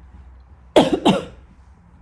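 A woman coughs twice in quick succession, about a third of a second apart, close to the microphone.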